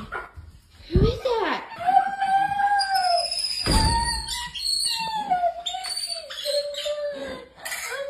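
Pet capuchin monkey, excited at greeting its owner, giving a run of long, wavering, high-pitched calls that fall away at their ends, several in a row.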